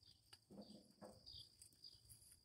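Near silence: faint outdoor background with a steady high-pitched insect drone and a couple of soft, faint sounds about half a second and a second in.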